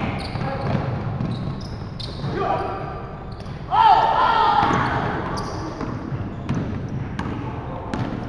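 Basketball bouncing on a wooden sports-hall floor and sneakers squeaking during a game, with players shouting, the loudest shout about four seconds in. The sounds echo around a large hall.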